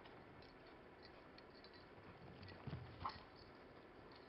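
Faint footfalls of a dog running over an agility dog walk, with a dull low thump about two-thirds of the way through as it comes down the ramp, followed right after by a brief high squeak.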